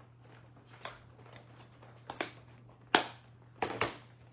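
Sharp plastic clicks and knocks from handling ink pad cases: a faint one about a second in, a double click past the middle, the loudest knock just after that, and a quick rattle of clicks near the end, over a low steady electrical hum.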